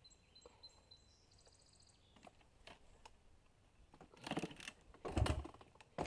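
A bird chirps a quick run of short high notes in the first second and a half. Then come two bursts of scuffing and knocking on dirt, about four and five seconds in, from a person moving about on a slippery slope.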